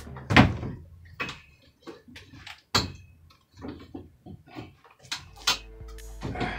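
A series of about five sharp knocks and clunks with quieter clatter between, the loudest about half a second in: a MIDI keyboard and its X-style keyboard stand being handled and set in place.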